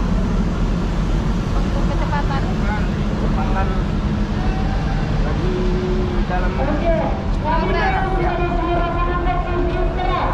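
Tour bus's diesel engine idling, a steady low rumble, with voices talking over it in the second half.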